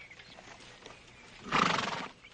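A horse gives one short, loud, fluttering call about one and a half seconds in, after a quiet stretch.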